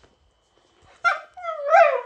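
A dog whining in two high, bending cries about halfway in: a short one, then a longer one that rises and falls in pitch. It is an attention-seeking tantrum at another dog getting a fuss.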